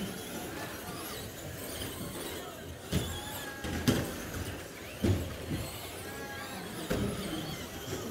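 Traxxas Slash RC short-course trucks racing, with a faint gliding motor whine and tyre squeal. Several sharp knocks come at about three, four, five and seven seconds in.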